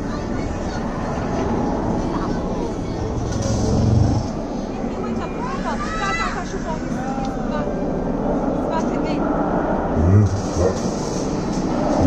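Animatronic troll figure giving out deep, wordless vocal sounds twice, about four seconds in and again near the end, over a steady background hubbub.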